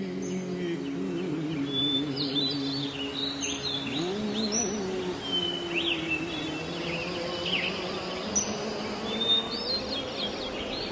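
Birds chirping and twittering in many short, quick calls, over soft background music made of sustained low tones that waver briefly about four seconds in.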